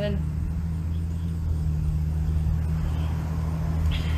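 Steady low mechanical hum, like a motor or engine running, with an even level and no changes.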